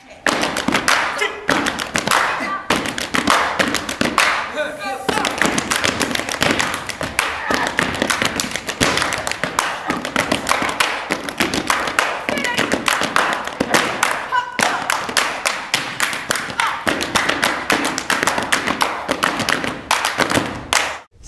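Group tap dance and body percussion: tap-shoe strikes and stomps on the stage floor with hand claps, in a fast, dense rhythm.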